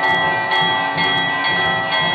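Temple bells ringing continuously for aarti, struck about twice a second so the ringing never dies away, over a low rhythmic beat at the same pace.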